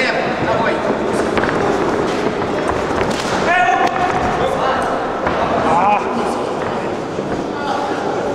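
Shouting voices echoing in a large sports hall, over the dull thuds of gloved punches and kicks landing during a kickboxing exchange. A raised voice stands out about three and a half seconds in.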